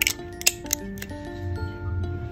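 Background music with a simple melody, over which a metal spatula clicks and scrapes against a gel pot a few times in the first second.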